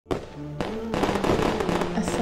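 Fireworks crackling and popping, a sound effect mixed with music that holds steady notes and steps between them; it starts abruptly right at the beginning.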